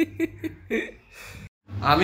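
Voices only: short spoken or babbled syllables, a sudden cut to silence about one and a half seconds in, then louder talking resumes.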